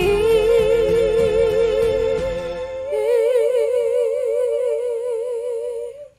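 Female vocals holding the song's final wordless "oh" with a wide vibrato over a fading backing track. The backing drops away about halfway through, and a second long held note follows and cuts off sharply at the end.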